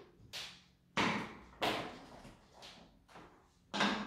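About five sharp knocks and clatters as a wooden-lidded glass jar of sugar cubes is handled with metal tongs, the loudest two about a second in.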